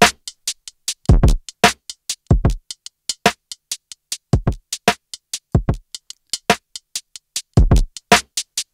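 Drum loop playing through Ableton Live's Beats warp mode with the transient envelope turned down, so each kick, snare and hat is cut off short and loses its release and body. The result is clipped, gated-sounding hits with silence between them.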